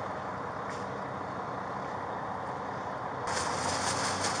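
Steady rumble of idling emergency vehicles, among them a fire truck, picked up by a police body camera. About three seconds in the sound jumps louder and brighter.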